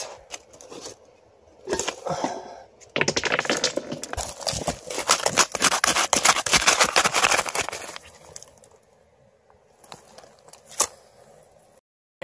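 Gravel and dirt being scraped and dug out over bedrock for a test pan, with short scrapes at first, then a long run of rapid gritty scraping and crackling of stones. It falls quiet with a single sharp click near the end.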